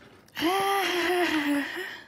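A woman's breathy, drawn-out "ooh" of wonder, starting about half a second in and sliding slightly down in pitch for about a second and a half.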